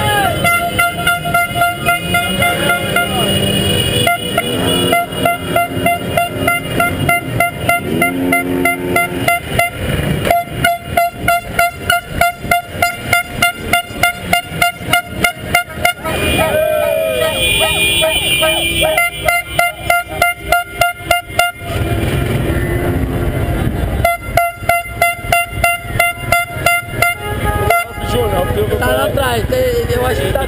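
Many vehicle horns honking without a break in a street motorcade, over the rumble of engines. For several seconds at a time one horn beeps rapidly, about four times a second. Voices shout over the honking.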